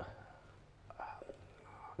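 A pause in conversation: a voice trails off at the start, then it is mostly quiet, with a faint, brief murmur or whisper about a second in.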